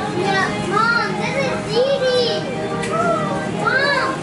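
A young child's high-pitched voice making several rising-and-falling calls without clear words, over a low background hum.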